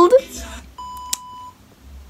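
A single steady electronic beep, about two-thirds of a second long, starting just under a second in, with a sharp click partway through it. Just before it, the tail of a spoken phrase trails off.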